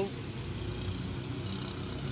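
Steady low hum of a motor vehicle's engine running in the street.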